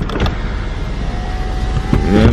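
Car interior noise: a steady low rumble of the engine and road, with a faint thin whine rising slightly in pitch over the second half.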